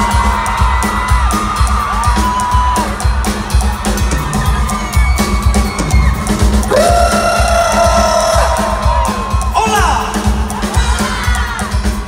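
Live concert band playing a pop-rock song with a steady kick-drum beat, loud through an audience recording, while a crowd of fans screams and cheers over the music in repeated high-pitched whoops.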